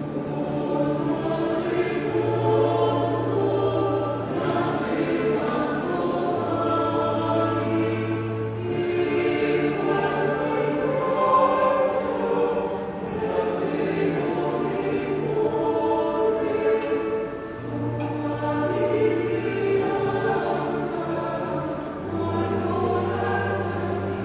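Voices singing a hymn in a church, over long-held low accompaniment notes that shift every second or two.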